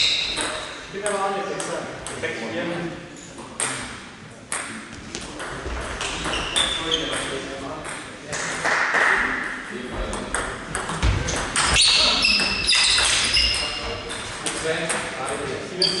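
Table tennis doubles rallies: the ball clicking sharply and repeatedly off the bats and the table, stroke after stroke, with short pauses between points.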